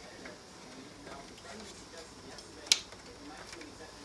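A single sharp click about two-thirds of the way through: an 8-pin PCIe power connector latching into the socket of a graphics card, the sign that it is fully seated. Faint handling noise before it.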